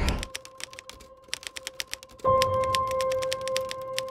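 Typewriter sound effect: quick runs of sharp key clacks, several a second, in bursts with short gaps. A little over two seconds in, a steady held music tone comes in under the clacking.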